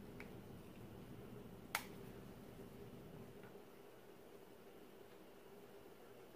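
A single sharp click of a flat iron's plates snapping shut, a little under two seconds in, over a faint steady low room hum.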